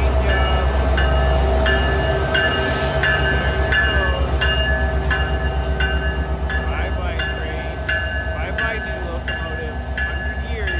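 Alaska Railroad diesel locomotives rolling past at close range as the train pulls away, their engines giving a heavy, pulsing low rumble. A high ringing repeats about twice a second over it.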